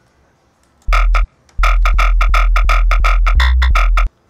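Jump-up drum and bass synth bass from Serum, with a sub oscillator underneath and saturator drive, playing MIDI notes: one short note about a second in, then from about 1.6 s a run of held notes pulsing about six times a second, stepping to a different note near the end.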